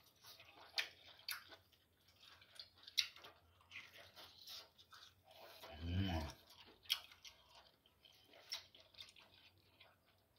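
A person chewing and biting a large piece of cooked meat and skin off the bone, with wet mouth smacks and scattered sharp crunches. About six seconds in there is a short hummed voice sound.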